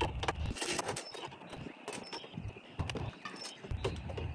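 Irregular light clicks and taps of hand work at a camper door's screwless window frame: a butter knife is worked into the frame's locking slots and plastic magnet tiles are set in as spacers around the edge.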